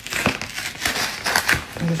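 Parcel packaging being handled and torn open by hand: a quick run of crinkling and crackling.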